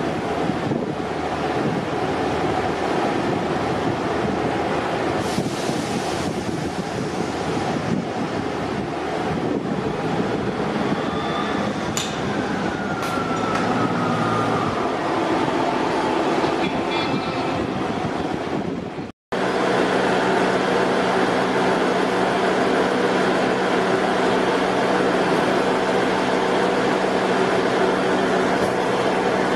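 Northern Class 158 Sprinter diesel multiple units idling at a platform. About halfway through there is a brief falling squeal and a few sharp clicks as the units are worked on to be split. After a sudden cut there is a steadier engine hum with a fixed low drone as a Sprinter unit runs slowly into the platform.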